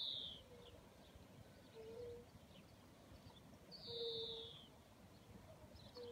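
Faint outdoor quiet with a bird's high, down-slurred call heard twice, about four seconds apart, and a few fainter low notes in between.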